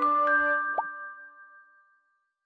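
Short musical logo jingle of ringing struck notes, with a quick upward pop partway through; the last notes ring out and fade to silence about a second and a half in.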